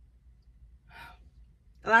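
A woman's short breath, a quick intake of air about a second in, in a pause between sentences over a faint low hum; she starts speaking again near the end.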